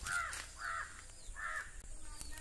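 A bird calling three times in quick succession, each call short and pitched.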